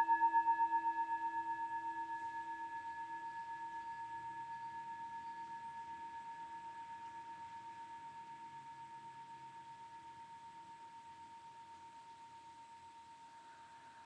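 Hand-held metal singing bowl ringing on after being struck, several tones sounding at once with a quick even wavering pulse, fading slowly until it is barely audible by the end.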